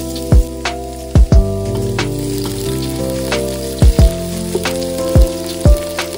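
Sliced onions sizzling as they fry in a metal pot, stirred with a wooden spoon, under background music with a beat.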